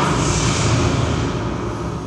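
Jet aircraft passing: a loud rushing noise over a deep rumble, slowly fading away.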